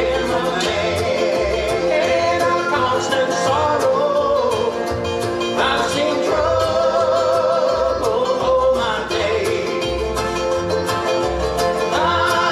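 Live old-time string-band music: voices holding long wavering notes over guitar, with a washtub bass thumping about twice a second and a washboard clicking out the rhythm.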